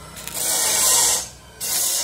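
Stick (arc) welding on a square steel tube joint: two short bursts of arc crackle and hiss as tack welds are struck. The first lasts about a second and is the louder. The second comes near the end.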